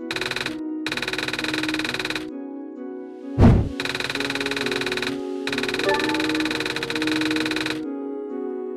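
Video-game cutscene audio: steady background music with a text-typing sound effect, runs of very rapid clicks in several bursts as caption letters appear. About three and a half seconds in, a single loud, deep thud marks a change of picture.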